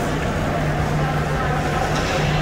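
Ice rink ambience: a steady low drone with indistinct voices from the spectators.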